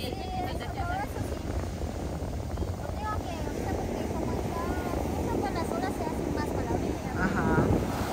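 Steady rush of ocean surf breaking on the beach, mixed with wind buffeting the microphone.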